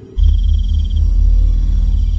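A loud, deep drone from the soundtrack starts suddenly a moment in, with a steady high chirring of crickets above it.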